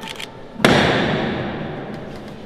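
A processional float (paso) being lifted by its bearers: a single sudden heavy thud about half a second in, echoing through the church and dying away over more than a second.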